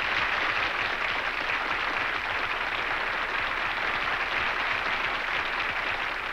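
Studio audience applauding, a dense steady clapping that thins out slightly near the end.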